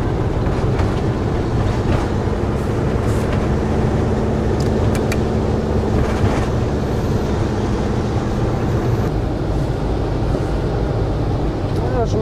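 Camper van driving along a mountain road: a steady engine drone and tyre-on-road rumble, heard from the moving vehicle.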